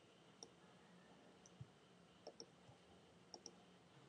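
Near silence broken by a handful of faint computer-mouse clicks, the last ones in quick pairs.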